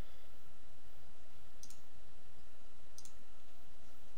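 Two computer mouse clicks, about a second and a half apart, over a steady low hum.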